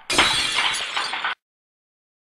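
A sudden crash with breaking and shattering, which stops abruptly after about a second, followed by dead silence.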